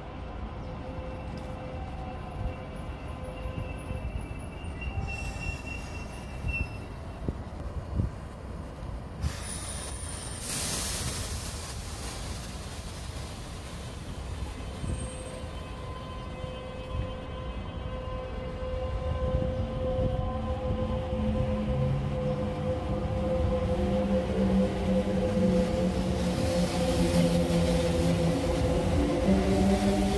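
Kintetsu 22000 series ACE electric train arriving and braking to a stop with a burst of hissing air, then starting off again. As it departs, its VVVF inverter and traction motors give a whine of several tones that rise in pitch and grow louder near the end.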